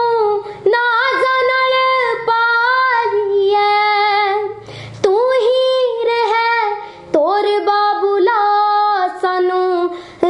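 A young girl singing unaccompanied: long held notes with wavering ornaments. The singing comes in four or five phrases, with short breaks for breath between them.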